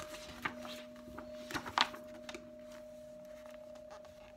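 Light rustling and a few soft taps of things being handled in a small room, the sharpest about a second and a half in, over a steady faint hum.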